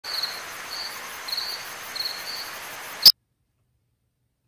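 An insect chirping in short, high chirps about every half second over a steady hiss. A sharp click just after three seconds ends it, and the sound cuts out completely.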